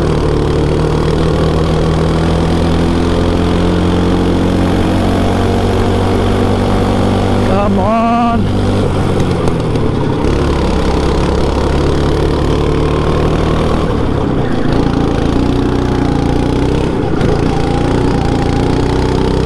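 Go-kart engine heard onboard, its note falling and rising as the revs change through the corners, with a sharp climb in revs about eight seconds in.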